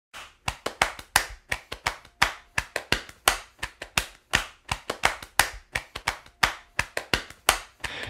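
Percussion intro of a song: hand claps and taps in a quick, uneven pattern, about five a second, with a stronger, longer-ringing stroke about once a second.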